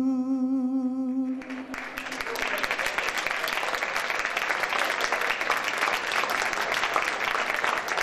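A male singer's last note, held with vibrato, ends about a second and a half in, and an audience breaks into steady applause that carries on to the end.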